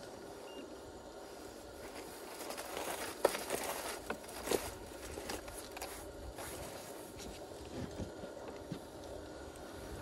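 Cast net being gathered up and loaded for a throw: soft rustling of the mesh with scattered light clicks and scrapes of its weights, a little busier about three to five seconds in.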